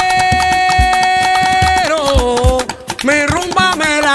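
Afro-Cuban rumba: a singer holds one long note for almost two seconds, then sings short bending phrases, over hand drums striking low, regular strokes. The music drops back briefly near three seconds in.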